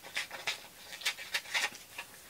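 Scissors cutting through a thin glossy seed-catalog page: about half a dozen short, crisp snips, ending as the piece comes free.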